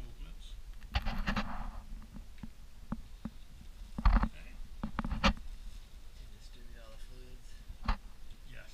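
Handling sounds: a few sharp clicks and knocks, one followed by a brief rustle, as the plastic syringe and cap and the paper drape are handled after the injection.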